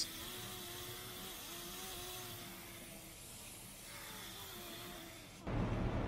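Stick-welding arc burning a 1/8-inch 7018 electrode at about 100–110 amps on the first stringer pass: a steady, faint sizzling hiss with a low wavering hum beneath it. It cuts off sharply about five and a half seconds in, giving way to a louder, low steady background.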